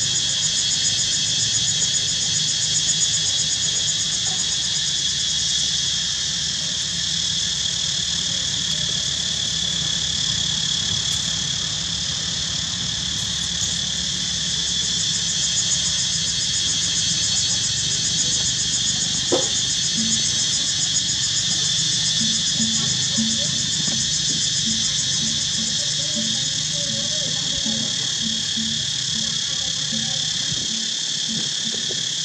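Steady high-pitched chorus of chirping insects, crickets or similar, with a low hum underneath.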